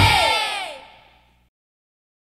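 The ending of a children's rock song: the music's last sound glides down in pitch and fades out within about a second.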